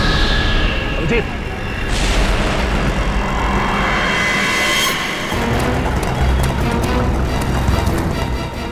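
Dramatic background score with low booming drones and whooshing sweeps, one falling just after the start and another building up before cutting off about five seconds in.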